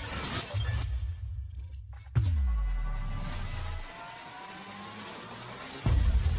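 Cinematic logo-intro sound effects: a swish, then a sudden deep boom about two seconds in that drops in pitch as it fades. A rising sweep follows and builds to a second hit near the end.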